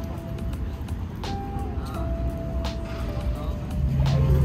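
Background music: long held notes over a low bass, with a few sharp hits, and a heavier bass line coming in near the end.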